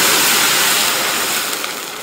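Loud hissing sizzle of boiling water poured into hot rock-sugar caramel in an iron wok, dying down gradually. The caramel has been cooked to a date-red colour, and the water stops the caramelising.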